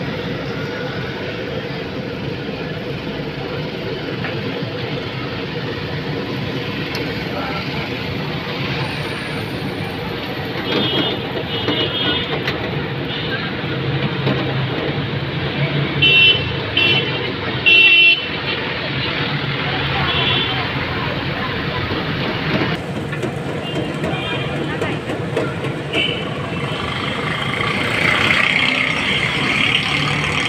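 Busy street traffic noise with repeated short vehicle horn toots, the loudest a cluster of three about halfway through, with more toots near the end.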